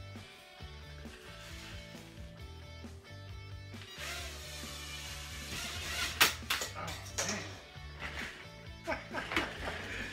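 Background music with a steady bass line. From about four seconds in, the high whirring hiss of a tiny quadcopter drone's propellers joins it, with a couple of sharp knocks around six seconds as the drone strikes something.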